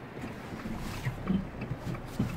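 Low wind rumble on the microphone, growing stronger about half a second in.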